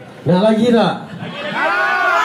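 Men's voices shouting two long drawn-out calls, the second starting about one and a half seconds in.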